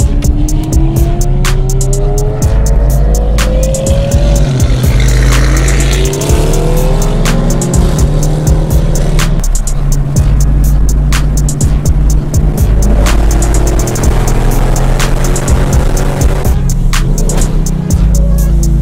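Music with a heavy bass line and a steady beat, over a car engine accelerating, its pitch climbing in several rising sweeps.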